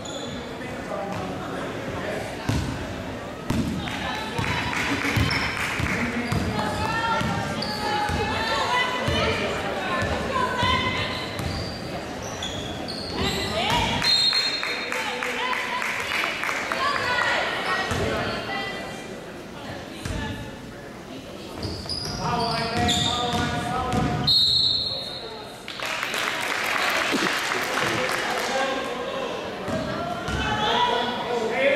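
A basketball bouncing on a gym's hardwood floor during play, with short knocks throughout, mixed with voices echoing in the large gym.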